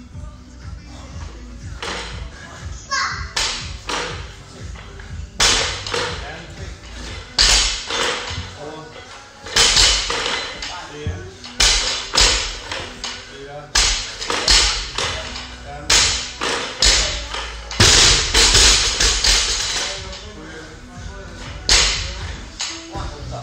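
Loaded barbell with bumper plates being power-snatched, with repeated thuds and clatter on the rubber gym floor roughly every two seconds, over background music.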